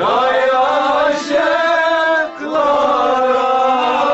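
Male voice singing Kashmiri Sufi kalam in long, held, chant-like phrases. The line breaks off briefly a little past halfway, then comes back in.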